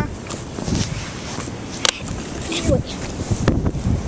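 Rustling and handling noise from a handheld camera being moved around outdoors, with two sharp clicks, one just under two seconds in and one about three and a half seconds in, and a brief faint child's voice.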